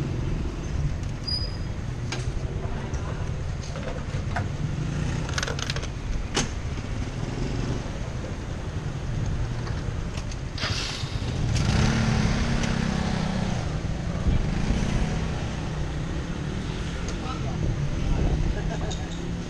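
Motorbike engines running on a petrol-station forecourt, one growing louder as it pulls up alongside about eleven seconds in, with scattered clicks and knocks from the scooter being handled at the pump and voices in the background.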